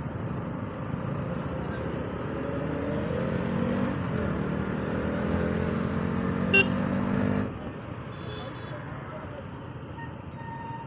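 KTM Duke 125's single-cylinder engine running in city traffic, its pitch rising steadily as the bike accelerates, then cutting off abruptly about seven and a half seconds in, leaving quieter traffic noise. A brief high beep sounds just before the cut.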